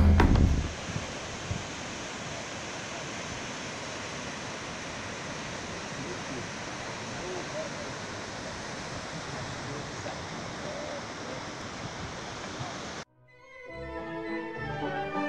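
Steady noise of small waves breaking on a sandy beach, an even wash with no distinct crashes. It follows the end of a drum-led music track in the first second and cuts off abruptly about a second before the end.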